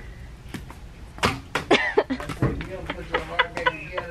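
Laughter and short non-word vocal outbursts, several in quick succession starting about a second in.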